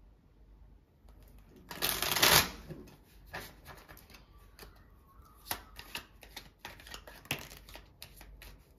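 A deck of tarot cards being shuffled and handled: one loud rushing burst about two seconds in, followed by a run of irregular short snaps and flicks of cards.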